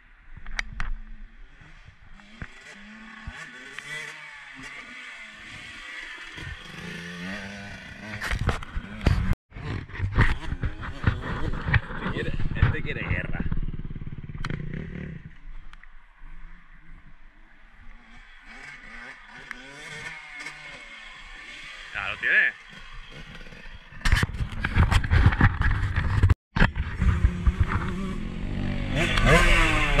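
Husqvarna 125 motocross bike's two-stroke engine revving up and down as it is ridden round a dirt track, with rises and drops in pitch through the throttle and gears. It is loudest in the last several seconds, and the sound cuts out for an instant twice.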